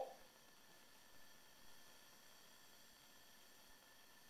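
Near silence: a faint, steady hiss of background room tone.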